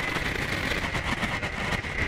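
Electronic synthesizer noise music: a dense, rumbling wash of noise with many fast clicks and a steady high tone held over it.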